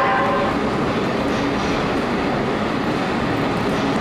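Loud, steady factory machinery noise, with a high whine of several tones that fades out about half a second in.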